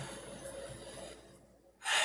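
Faint hiss that drops out completely for a moment, then a man's quick intake of breath near the end, just before he speaks again.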